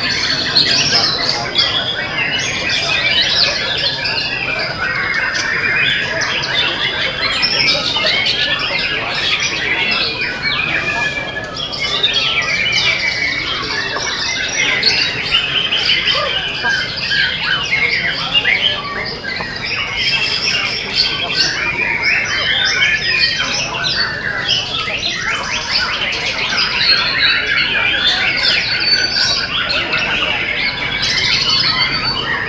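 Caged white-rumped shamas (murai batu) singing in a songbird contest: a dense, continuous chorus of many birds at once, with overlapping whistles and rapid call phrases.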